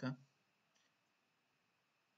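A single faint computer mouse click a little under a second in, against near silence.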